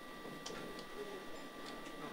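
Quiet operating-room sound: two faint, steady, high electronic tones from the Stellaris Elite phaco machine while it runs in the eye, with a few soft ticks scattered through.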